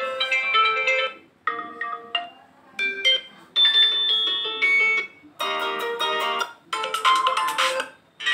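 Built-in ringtones on an Oppo A53s phone previewed one after another through its speaker: short melodic snippets, about six in all, each cut off after a second or so as the next one is tapped.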